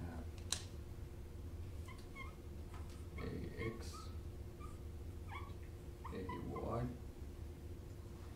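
Dry-erase marker squeaking on a whiteboard in short strokes while drawing, after a sharp tap as the marker meets the board about half a second in.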